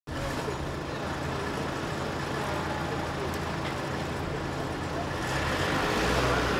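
Street ambience: steady road traffic noise with faint, indistinct voices.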